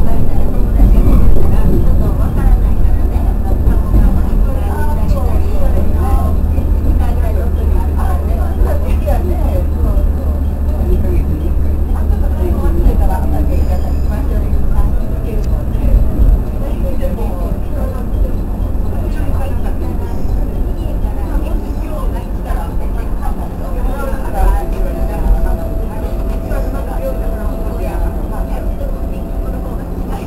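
Running noise of a JR West 103 series electric train heard inside the cab: a heavy low rumble that eases off about halfway through, with a steady tone near the end. Indistinct voices carry on underneath.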